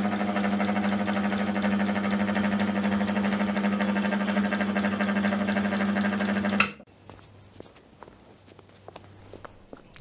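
Vintage film projector running: a steady motor hum with a fast, even clatter from the film mechanism. It cuts off suddenly about seven seconds in, leaving only faint clicks.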